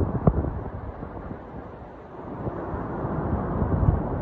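Hurricane-force wind, gusting at about sixty miles an hour, buffeting the phone's microphone with a low rumbling rush. It eases about two seconds in, then builds again. A single sharp knock comes just after the start.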